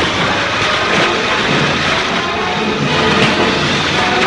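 Continuous heavy splashing of water as two men wrestle in it, with dramatic background music underneath.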